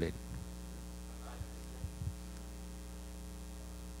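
Steady low mains hum from the microphone and sound system, with a couple of faint brief ticks a little under two seconds in.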